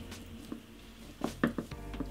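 Aluminium foil crinkling in small, soft clicks as it is twisted and pinched around a lock of doll hair.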